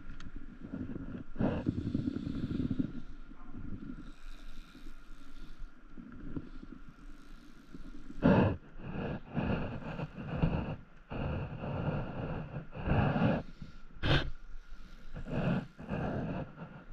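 Irregular gusts of wind buffeting the microphone, heavier and more frequent in the second half, over the faint lap of water on an inflatable paddleboard. A spinning fishing reel is handled and its crank turned.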